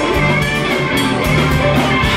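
Live band playing an instrumental passage: electric guitar and drum kit with bass and keys, and a horn section of saxophone and trumpet playing, with regular drum beats.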